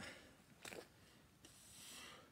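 Near silence, with a faint hiss that swells near the end.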